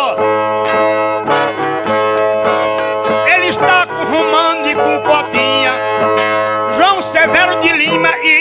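Brazilian ten-string violas (viola nordestina) played in an instrumental interlude between sung verses of repente, with steady plucked and strummed notes.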